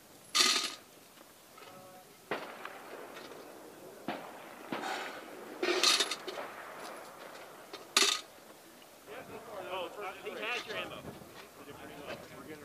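Rifle shots on a firing range: three loud, sharp reports with short ringing tails, about half a second in, near the middle and about eight seconds in, with fainter knocks between them. Faint voices follow near the end.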